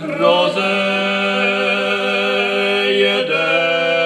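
Two male voices singing a Moravian folk song in duet, holding long notes; the voices move to new notes about three seconds in.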